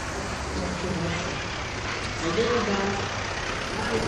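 Street traffic at a junction: a steady rumble of vehicles, with snatches of people's voices.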